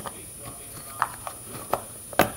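A few light clicks and taps of trading cards being handled and put back into a box, two of them sharper, about a second in and near the end.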